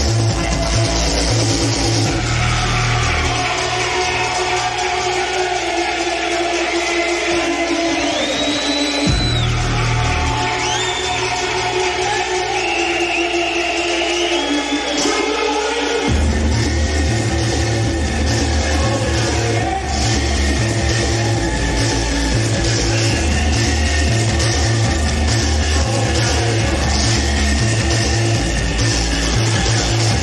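Electronic breakbeat music from a live DJ set. A couple of seconds in, the bass and drums drop out for a breakdown with a long falling synth sweep and wavering high synth lines, and the heavy bass and beat come back in about halfway through.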